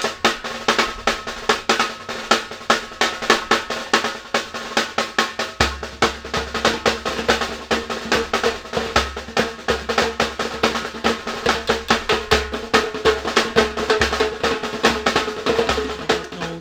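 A drum band of snare drums and large bass drums playing a fast, driving rhythm of dense, rapid strokes. The deep bass drums come in about five and a half seconds in.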